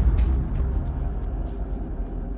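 Film soundtrack: a dark, steady low rumbling drone, with a few faint ticks over it.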